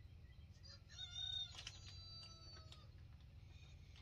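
A rooster crowing faintly: one drawn-out call starting about a second in and fading out about two seconds later, with a few light clicks during it.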